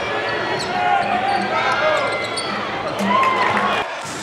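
Live game sound of a basketball being dribbled on a hardwood court, with short squeaks of shoes and crowd voices in the arena. The sound drops suddenly just before the end.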